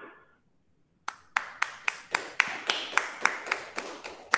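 Hand clapping: a steady run of single, evenly spaced claps, about four a second, starting about a second in.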